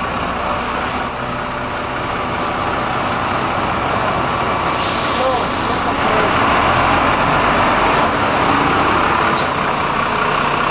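Double-decker bus pulling away from the stop, its diesel engine running and growing louder, with a sharp hiss of compressed air about five seconds in. A thin steady whine sounds over the first two seconds.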